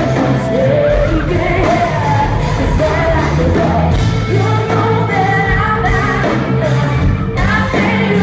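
Live hard rock band: a female lead vocal sings over loud electric guitars, bass and drums, heard from among the audience in a concert hall.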